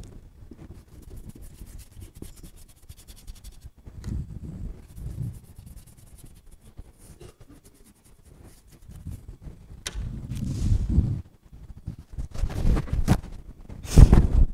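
A flat paintbrush rubbing and scrubbing over wet watercolor paper in irregular strokes, with dull low bumps, the loudest of them about ten seconds in.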